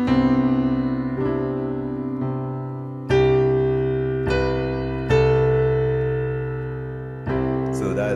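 Yamaha portable keyboard on a piano voice, playing sustained chords of a worship song in the key of C. New chords are struck about once a second, each ringing and fading, with one chord held longer near the middle before the next comes in near the end.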